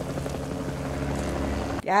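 Film soundtrack carrying a steady low engine rumble of arriving vehicles, which grows slightly louder.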